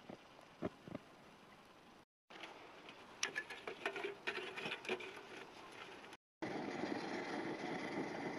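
Multi-fuel camping stove being lit and primed: light metal clinks and taps as the stove and its windscreen are handled, then a steady rushing of the burning flame near the end.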